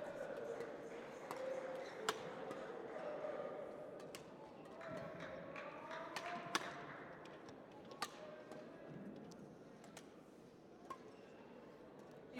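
Badminton rackets hitting a shuttlecock in a warm-up rally: a few sharp, spaced-out hits, the clearest about two seconds in and around six and a half and eight seconds in, over the faint hum of voices in a large sports hall.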